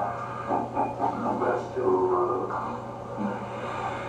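Dialogue from a film soundtrack played over a room's loudspeakers, muffled and too indistinct for words to be made out, with a steady low hum underneath.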